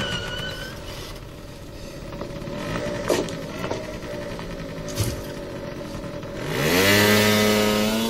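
A motor scooter's small engine running steadily, with a couple of sharp clicks. About six and a half seconds in, a louder pitched sound rises and then holds steady.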